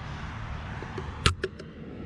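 A sharp click about a second in, then two lighter clicks, from handling the hinged wooden front of a bluebird nest box, over a low rumble.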